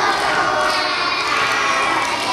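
A large group of young children shouting together in chorus.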